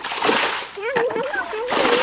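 Water splashing as a plastic container is scooped through a shallow muddy stream and the water is thrown out, bailing the stream. There are repeated splashes, one near the start and a longer run from about a second in.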